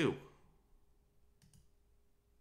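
A single faint click about one and a half seconds in, from a computer key or mouse button pressed to step the debugger on through the divide function. Otherwise low room tone after the end of a spoken word.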